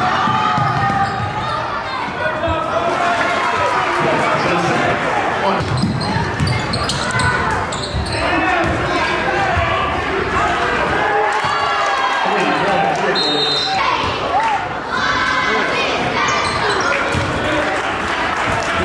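A basketball being dribbled on a hardwood gym floor during live play, with players and spectators shouting and talking in the echoing gym.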